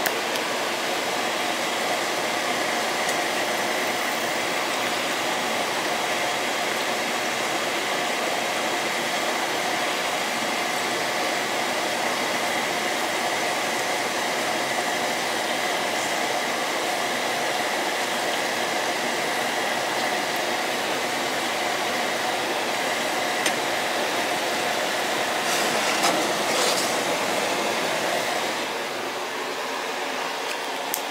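Food frying in oil in a nonstick pan, a steady sizzle throughout, with a few brief scrapes of a fork about 26 seconds in. The sizzle drops a little near the end.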